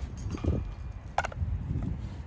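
Outdoor wind buffeting the microphone, a fluctuating low rumble, with a brief sharper sound just past a second in.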